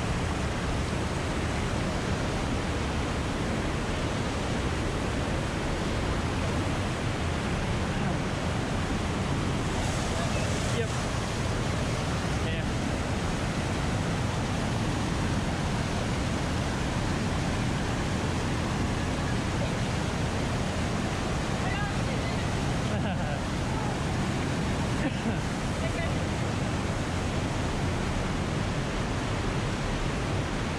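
River water rushing over small cascades and around boulders in a narrow sandstone canyon, a steady, unbroken rush of white water.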